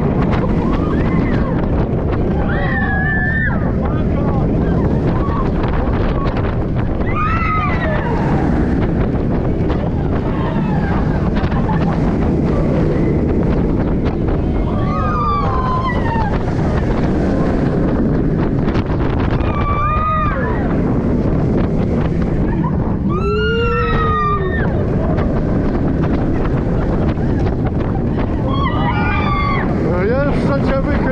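Roller coaster ride heard from a camera on the train: heavy wind buffeting the microphone over the rumble of the train on the track. Riders scream and whoop in short bursts about six times through the ride.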